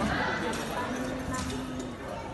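Hall ambience: voices and music in the background, with a few sharp clicks.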